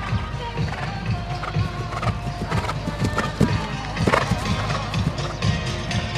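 Music playing with a horse's hoofbeats thudding as it canters on grass.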